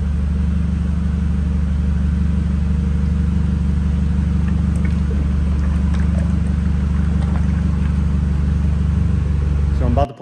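Forklift engine idling with a steady, unchanging drone.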